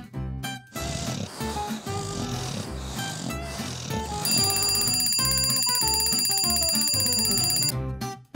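Light background music. About four seconds in, a twin-bell alarm clock starts ringing, a loud rapid bell rattle that holds steady and then cuts off sharply just before the end.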